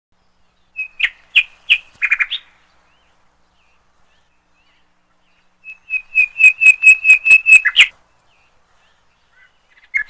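Bird chirping as an intro sound effect: a short cluster of high chirps about a second in, then, after a silent gap, a faster run of even chirps, about seven a second, ending near eight seconds.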